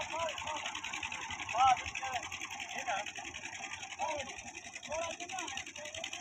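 Fiat tractor's diesel engine running with a fast, even clatter, stuck in deep mud, while men's voices call out over it, loudest about one and a half seconds in.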